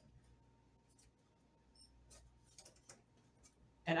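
Quiet room tone with a few faint, scattered light taps and clicks, a little more of them in the second half.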